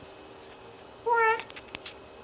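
A domestic cat gives one short meow about a second in, followed by a few faint clicks.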